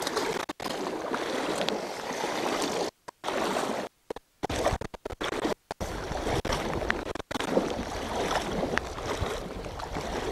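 Steady rushing of river water, with wind on the microphone adding a low rumble in the second half. The sound cuts out completely several times for a fraction of a second each.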